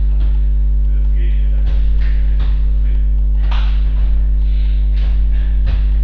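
Loud steady electrical mains hum with its stack of overtones, running unchanged throughout, with scattered soft thumps and faint voices beneath it.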